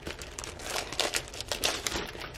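Thin plastic clear-file folders rustling and crinkling as they are handled and slid apart, a quick run of sharp crackles.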